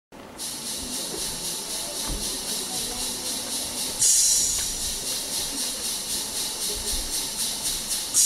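Opening of a dance track played over the hall's sound system: a rhythmic hiss with a fast, even pulse that steps up in loudness about halfway through, before the beat comes in.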